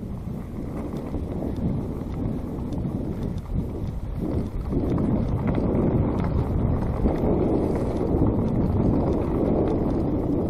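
Mountain bike riding fast down a dirt trail: wind noise on the microphone mixed with the tyres running over dirt and dry leaves, growing louder about halfway through as the bike picks up speed.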